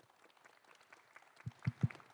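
Microphone handling noise: three dull, low thumps in quick succession about a second and a half in, over faint rustling.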